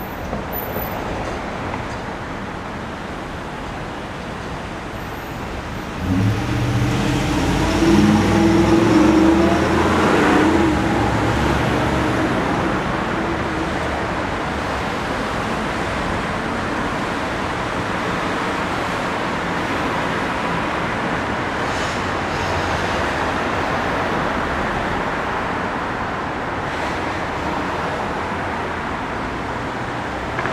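Steady city street traffic noise. About six seconds in, a motor vehicle's engine passes close by, loudest for a few seconds, then fades back into the traffic.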